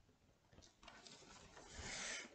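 Near silence, then a faint rustling and rubbing that grows louder toward the end: a cardboard advent calendar box being handled and lowered.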